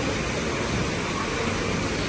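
Steady splashing hiss of small decorative fountain jets, an even rush of water with no change in level.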